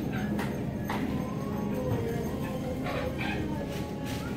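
Supermarket checkout ambience: scattered clacks and knocks of goods and bags being handled at the counters over a steady low hum, with faint background music.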